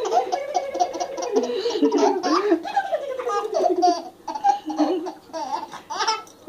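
A baby laughing in a run of quick, high-pitched giggles while being tickled, quieter after about four seconds.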